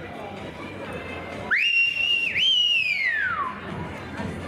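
A loud human whistle of encouragement from the arena audience for a reining horse and rider: it swoops up sharply and holds high with a brief dip, then climbs again and falls away in a long downward glide.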